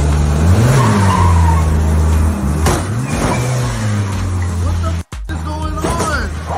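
A loud vehicle engine running with a low, steady note, revving up briefly about a second in and again around three seconds in; the sound cuts out for an instant just after five seconds and then carries on.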